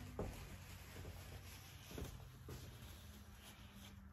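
Quiet room tone with a low steady hum and a few faint knocks, about a fifth of a second in and again about two seconds in.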